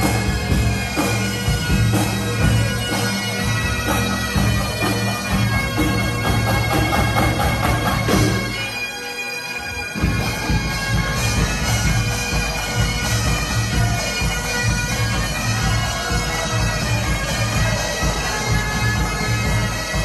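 A Highland pipe band playing: bagpipe melody over the steady drones of the pipes, with snare and bass drums, in a pop-song arrangement. The sound briefly thins out about nine seconds in.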